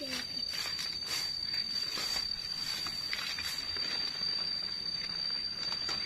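Mangosteen tree leaves and branches rustling in light, scattered bursts as they are pulled down by hand, under a steady high-pitched tone.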